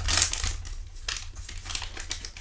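Foil trading-card pack wrapper crinkling as it is handled and opened, loudest in the first half second and then softer.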